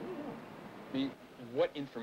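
Faint, short snatches of a man's voice, unintelligible: a brief mumbled reply in a few short bursts.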